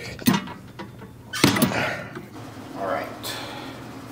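A man's sharp exhales and grunts of effort during a set on a rear-delt fly machine: two hard bursts, about a second apart, each trailing into a breathy groan, then a softer breath near the end.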